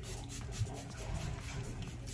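Pump-spray bottle of setting mist spritzing several times in quick succession, short hissy puffs of spray, one of them a little louder about half a second in.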